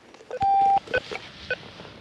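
Electronic beeps: one steady beep lasting about half a second, then a few very short pips about half a second apart.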